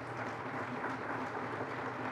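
Seated audience applauding, many hands clapping together at a steady rate.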